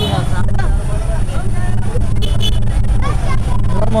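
Motorcycle engine running at low speed with a steady low hum, under the chatter of a crowd of people close by.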